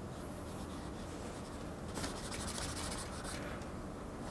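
Red drawing crayon scratching across a paper pad on an easel in quick sketching strokes, with a dense run of rapid hatching strokes about halfway through.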